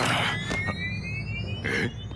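Cartoon sound effects: a sudden noisy hit, then a rising whine lasting about a second and a half, ending in a short burst.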